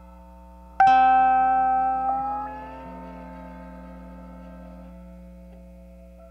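Lap steel guitar improvisation through a looper and effects processor: a bright plucked note rings out about a second in, then slides upward in pitch as it fades over sustained looped tones. A steady low hum sits underneath.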